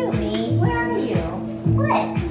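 Background music with a steady beat, over which a sphynx cat meows a few times.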